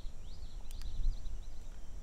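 Summer woodland ambience: a steady high insect trill, a few faint rising-and-falling bird chirps, and a steady low rumble, with two faint clicks a little under a second in.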